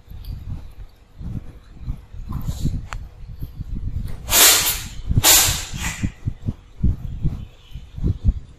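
Kittens and cats eating from shared bowls: an irregular patter of soft chewing and lapping noises. About four and five seconds in come two loud hiss-like bursts, each under a second long.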